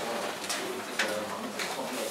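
Low, indistinct talking among people at a meeting table, with two sharp clicks about half a second and a second in.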